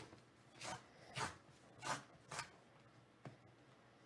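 Cardboard tear strip being ripped open along the edge of a sealed trading-card hobby box: four short, quiet ripping strokes about half a second apart, followed by a small click.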